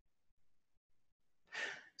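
Near silence, then near the end a man's single short breath drawn in close to a microphone.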